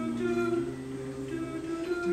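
Male voices humming held notes together in harmony, the chord changing every half second or so, as a song's intro.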